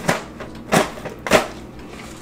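Cardboard box of boxed mac and cheese being pulled and torn open: three short ripping, crunching noises, the last the loudest.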